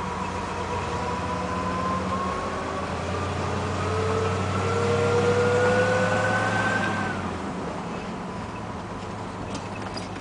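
Car engine heard from inside a moving car, with a whine that rises slowly in pitch as the car speeds up, louder in the middle, then cuts off about seven seconds in as the engine eases.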